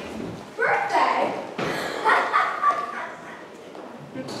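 Actors' voices speaking lines loudly on a stage, in a large hall.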